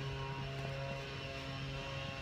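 A steady low hum with a few fainter steady tones above it, unchanging throughout.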